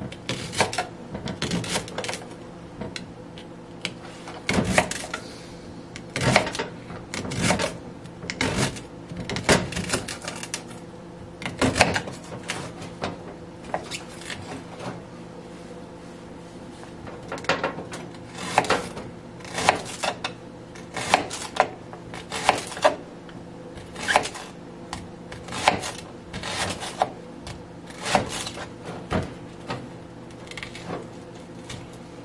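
Kitchen knife slicing a leek into rings on a plastic cutting board: a sharp knock as each cut meets the board, one or two a second, with a lull of a few seconds about halfway through. A steady low hum runs underneath.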